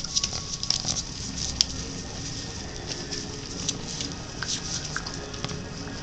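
Puppies' paws scrabbling and pattering on newspaper as they play, a run of light irregular scratches, clicks and paper rustles.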